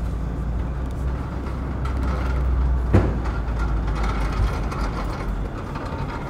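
Low, steady rumble of road traffic, with a heavy vehicle's engine easing off after about four and a half seconds. There is one short, sharp sound about three seconds in.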